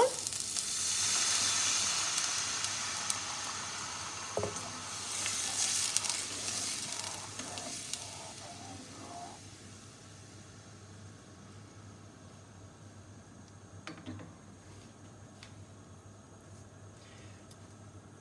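White wine poured into a hot pan of sautéed onions, bay and thyme, bursting into a sizzle about half a second in that fades away over about ten seconds. A wooden spatula stirs through it.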